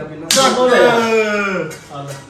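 A sharp slap about a third of a second in, followed at once by a man's loud drawn-out shout lasting about a second and a half.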